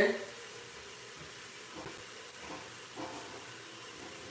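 Low, steady hiss with a few faint, short sounds in the middle.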